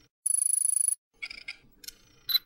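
Logo-reveal sound effect: a high, rapidly fluttering bell-like ring lasting under a second, followed by a few short sparkly chimes.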